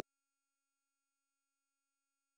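Silence: the sound track goes dead after speech is cut off abruptly at the very start.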